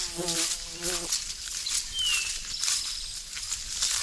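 Footsteps brushing through wet grass, with a flying insect buzzing close by for about the first second and a single short downslurred bird whistle about two seconds in.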